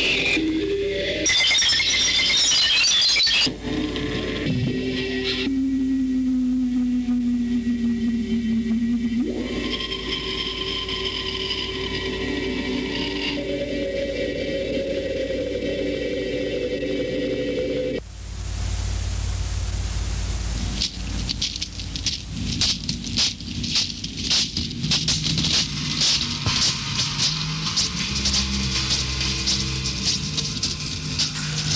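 Experimental noise music. A burst of harsh noise in the first few seconds gives way to layered droning tones that slowly slide downward. About 18 seconds in it cuts abruptly to hiss, which breaks into fast, irregular crackling over a low hum.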